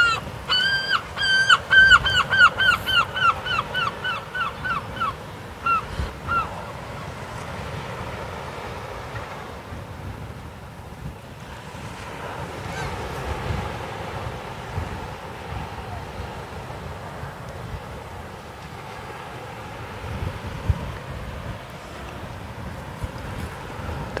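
A gull calling: a quick run of about twenty repeated, slightly falling cries, about four a second, that weakens and stops about six seconds in. After that only a steady hush of wind and surf remains.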